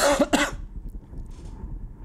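A man coughs twice in quick succession: a cough from a cold.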